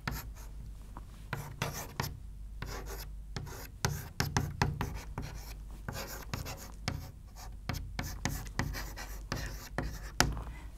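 Chalk writing on a chalkboard: a run of short, irregular scratches and taps as an arrow and words are chalked onto the board.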